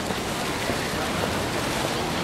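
Steady splashing of a fountain jet falling back into a shallow stone basin.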